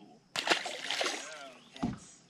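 A small largemouth bass tossed back by hand splashes into the lake beside the boat, a sudden splash about a third of a second in that trails off. A short thump follows near the end.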